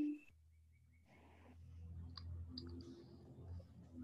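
Faint scattered clicks over a low steady hum, picked up through a video-call microphone; the clicks start about two seconds in.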